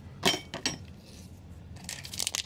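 Two light, sharp clinks about half a second apart within the first second, each with a brief faint ring.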